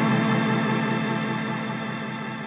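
Electric guitar chord ringing out through delay pedals, with a fast, even rippling pulse in the sustained notes as it fades steadily.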